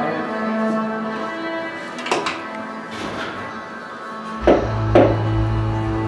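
Background music of sustained, held chords, with a low bass note coming in about two-thirds of the way through. A few short knocks sound over it, the loudest two close together near the end.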